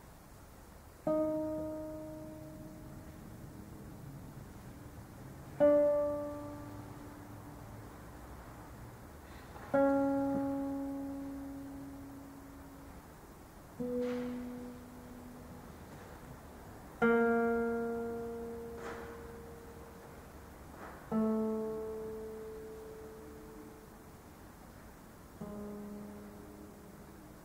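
Nylon-string classical guitar playing slow, widely spaced two-note chords, seven in all, each plucked and left to ring and die away over a few seconds.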